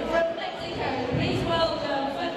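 A woman announcing into a microphone over a public-address system in a large hall.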